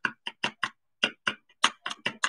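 A run of quick, light clicks at an uneven pace, about five or six a second.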